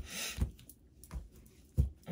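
Tarot card decks handled on a tabletop: a few short knocks as decks are picked up, tapped and set down, with a brief rustle of cards sliding near the start.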